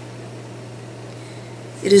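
Room tone in a pause in speech: a steady low hum with a faint even hiss. A woman's voice comes back near the end.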